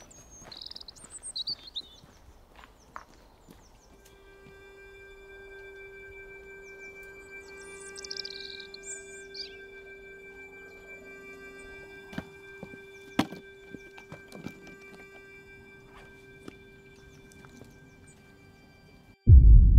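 Quiet background music: a held low drone with higher sustained notes, entering about four seconds in, over birds chirping, with a couple of sharp clicks midway.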